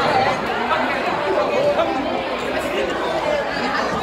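Chatter of a packed school cafeteria: many students' voices overlapping in a steady din, with no single voice standing out.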